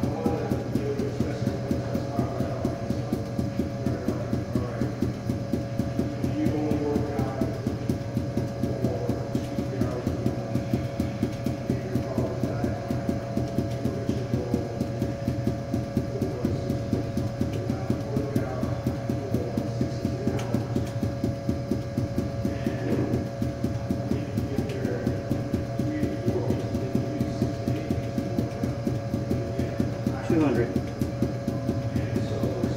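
Five juggling balls thrown down hard and bouncing off a hard floor in a quick, steady rhythm of several bounces a second, with music playing underneath.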